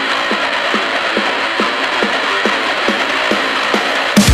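Mashup music in a stripped-back section: a steady beat a little over twice a second with the low bass filtered out.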